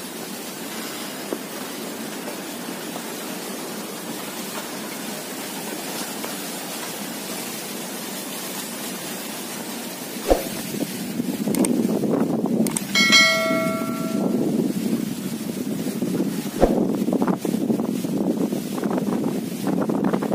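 Steady outdoor noise that grows louder and rougher about halfway through, with a couple of sharp knocks. About two-thirds of the way in, a single bell strike rings out and dies away over a second or so.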